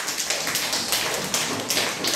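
A group of schoolchildren clapping their hands, a quick, steady run of claps.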